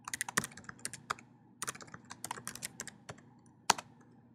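Typing on a computer keyboard: quick runs of keystrokes with short pauses between them, and one louder keystroke near the end.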